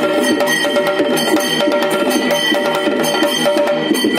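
Yakshagana percussion: a chande drum beaten with sticks and a maddale barrel drum played by hand, in a fast, dense rhythm over a steady drone.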